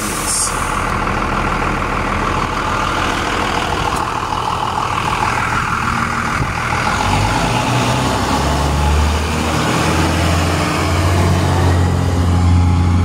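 A 2000 Thomas FS65 school bus's 5.9 Cummins diesel engine idling, with a brief hiss at the start. From about seven seconds in it revs up in steps and gets louder as the bus pulls away.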